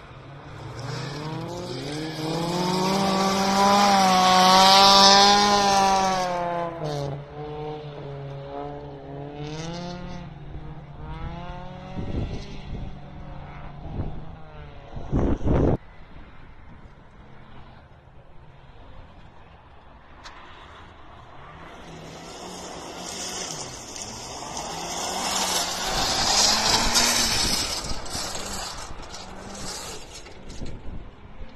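Rally car engine revving hard as it passes, its pitch rising and falling through gear changes, loudest about four seconds in, then fading. After a short loud rumble around the middle, a second rally car approaches and passes near the end.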